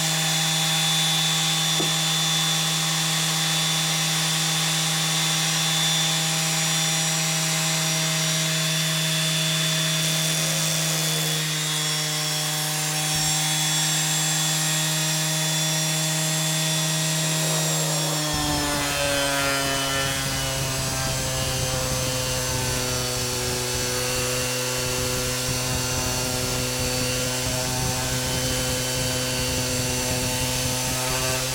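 Electric random-orbit sander running with a steady hum. About two-thirds of the way through, its pitch drops and a coarse rubbing noise joins in as the pad bears down on the filler-patched wooden cabinet side and the motor slows under the load.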